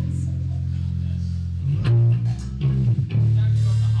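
A sludge/doom metal band playing live: heavy, sustained low chords from electric guitar and bass guitar, changing about two seconds in and again near three seconds.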